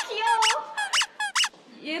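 A quick run of about five short, sharp, high squeaks within a second and a half, then a brief lull.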